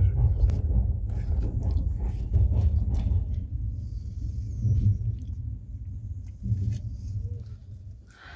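Low rumble of a passenger train running on the rails, heard from inside the carriage, with a few faint clicks; the rumble gradually fades over the last few seconds.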